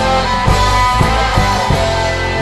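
Instrumental break of a rock song: guitar over bass and a steady drum beat, with no vocals.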